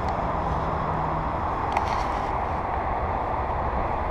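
Steady hum of distant road traffic.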